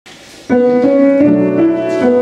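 Upright acoustic piano playing: a chord struck about half a second in, followed by further notes every few tenths of a second over the held tones.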